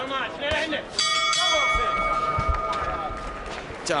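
Boxing ring bell struck about a second in, ringing out and fading over a couple of seconds: the bell ending the round.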